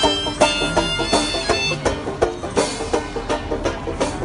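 A one-man-band street busker playing: plucked strings over a steady beat of bass drum and cymbal strokes.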